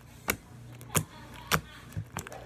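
Homemade white-glue slime being pressed and poked by the fingers, giving four short, sharp sticky pops about half a second apart.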